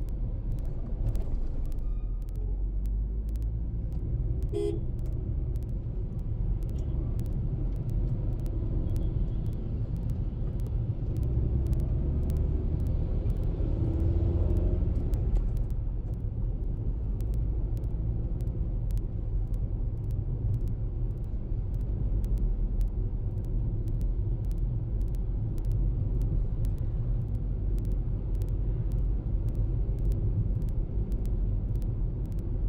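Steady low road and engine rumble of a moving car, heard from inside the cabin, swelling slightly about halfway through.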